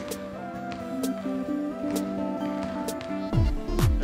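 Background music with steady held notes and light regular ticks. About three seconds in, a louder electronic dance beat starts, with deep bass hits that fall in pitch.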